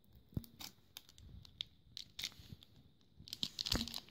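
Foil wrapper of a Pokémon trading-card booster pack crinkling and crackling in someone's fingers as he tries to tear it open, in scattered crackles with a louder run near the end. The wrapper does not give way to his fingers.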